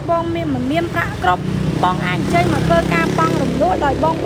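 A man talking over street traffic. A passing motor vehicle's engine hum grows louder from about a second in and fades near the end.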